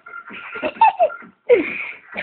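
A person laughing loudly in a few short bursts.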